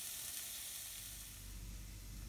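Sliced spring onions sizzling gently in olive oil in a hot frying pan, a faint steady hiss: the onions are sweating without browning.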